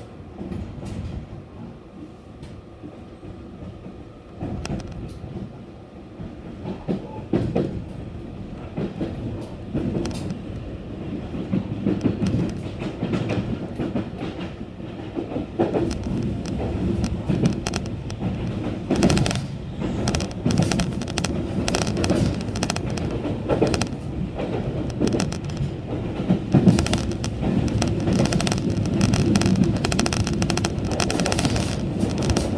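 Train running along the track as heard from inside the car: a low rumble with the clickety-clack of wheels over rail joints. The sound grows steadily louder and the clicks come more often as the train picks up speed.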